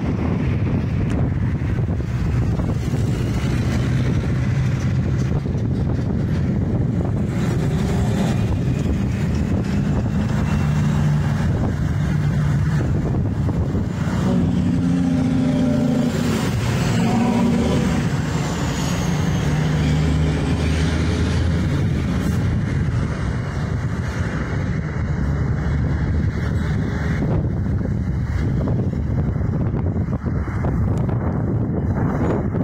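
Road traffic passing beneath a footbridge: cars, vans and trucks running by in a steady stream, their engine notes rising and falling as they pass, with one heavier engine standing out around the middle. Wind rumbles on the microphone throughout.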